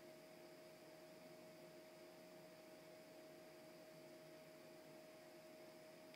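Near silence: faint room tone with a steady hum and hiss.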